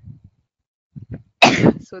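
A woman coughs once, sharply, about one and a half seconds in.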